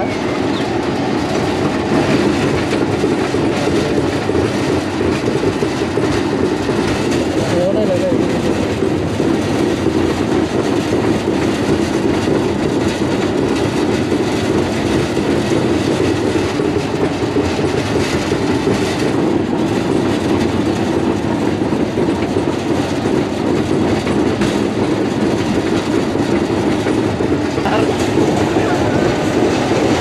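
Amusement-park ride train running steadily along its elevated track, heard from on board, with a couple of brief knocks from the cars along the way.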